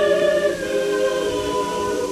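Choral singing: several voices holding long chords, moving to a new chord about a second in.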